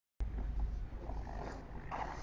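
Ice-skate blades scraping faintly on a rink over a steady low rumble, with a short, sharper scrape near the end as a jump is landed.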